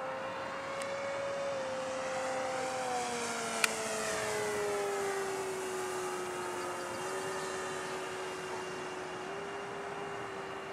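Electric RC P-47's Turnigy 4260 brushless motor and propeller whining in flight, the pitch falling over a few seconds and then holding steady. A single sharp click comes a little before four seconds in.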